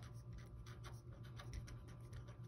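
Felt-tip marker writing on a paper worksheet: a quick run of short, faint strokes as numbers and letters are written.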